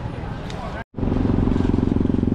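A steady engine drone with a rapid, even pulse starts suddenly a little under a second in, after a brief drop to silence, and runs on loud; before it, only low background ambience.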